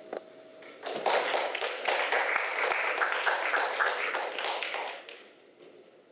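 A small audience applauding, starting about a second in and dying away after about four seconds.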